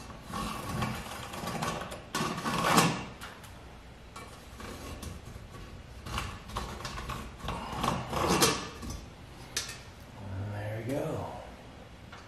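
Pencil scraping around a galvanized sheet-metal duct fitting held against a drywall ceiling, with the metal rubbing and rattling on the ceiling, in several irregular scraping bursts. A brief wordless vocal murmur comes near the end.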